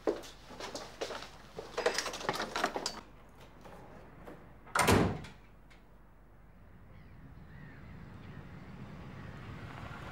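A run of footsteps and small knocks, then a door slammed shut about five seconds in. After that a faint noise grows steadily louder as a car approaches on a dirt track.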